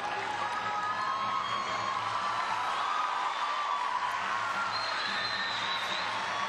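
Arena crowd cheering steadily, with a few faint held tones sounding over the crowd noise.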